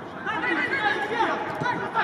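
Footballers on the pitch shouting and calling to one another, several voices overlapping, starting about a third of a second in.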